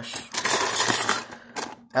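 Metal cutlery clattering and clinking in a plastic drawer tray as a hand rummages through it, stopping about a second and a half in.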